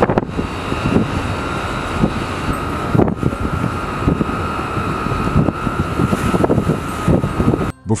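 Steady machinery hum with a constant high whine, mixed with gusting wind rush, as heard on the deck of a ship under way at sea. It cuts off suddenly shortly before the end.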